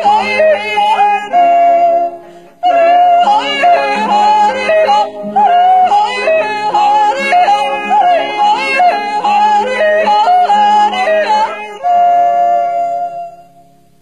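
A group of voices yodeling together, the lead voices flipping quickly up and down in pitch over steadily held lower notes, with a brief pause about two and a half seconds in. The song ends on a long held chord that fades out shortly before the end.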